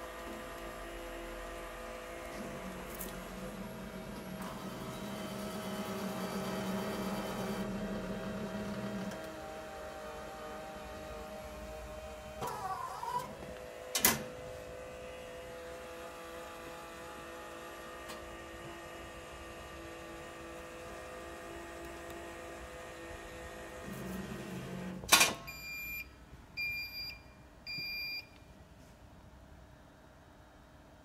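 Al-Meister ALM3220 automatic laminator running with a steady motor hum, which grows louder for about six seconds a few seconds in. Two sharp clicks come in the middle and later, then three short electronic beeps near the end, after which the machine falls quiet.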